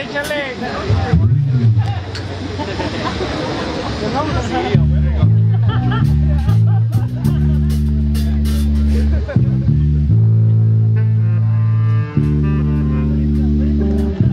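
Voices and crowd chatter, then about five seconds in, after a shouted "échale," a live band kicks into a song: electric bass guitar notes in a rhythmic line with electric guitar and drum hits.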